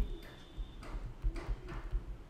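A handful of faint, irregular clicks and taps of a stylus writing on a tablet.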